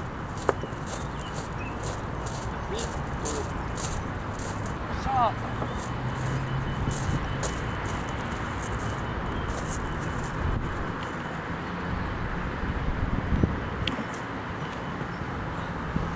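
Steady outdoor noise with road traffic, broken by a few short, sharp clicks. One of these is a minigolf putter tapping the ball.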